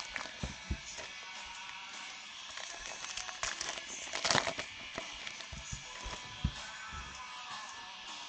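Foil trading card pack wrappers crinkling as they are torn open and the cards pulled out, with a louder crinkle about four seconds in and a few light taps as cards are handled on the table. Faint background music plays underneath.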